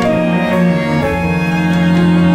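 A string ensemble of violin, viola and cellos playing sustained bowed notes in a chamber-jazz piece, with a low note held steadily underneath.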